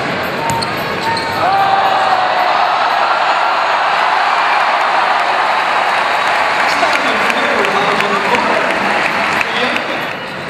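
Game sound on an indoor basketball court: crowd voices that swell about a second in and stay loud, with the basketball bouncing on the hardwood.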